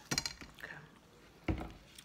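Ranch dressing squirting from a plastic squeeze bottle, a few short sputtering bursts near the start.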